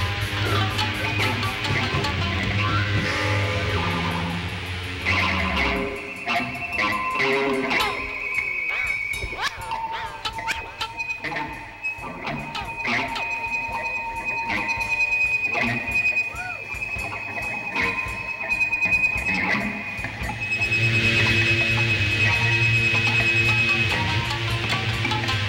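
Live rock band with electric guitars, bass and drums. About six seconds in the bass and drums drop out, leaving a sparse noisy stretch of long high held guitar tones, scrapes and sliding pitches, and the full band comes crashing back in near the end.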